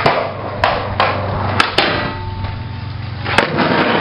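Skateboard wheels rolling on asphalt, with several sharp clacks of the board, two in quick succession about a second and a half in and the sharpest near the end.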